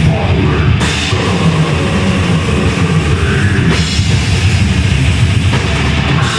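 Live heavy metal band playing loudly: distorted guitars, bass guitar and a drum kit in a dense, steady wall of sound through the venue's amplification.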